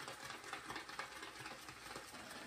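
Faint, quick scratchy strokes of a QED Select silvertip badger shaving brush swirling over a puck of shaving soap as it is loaded.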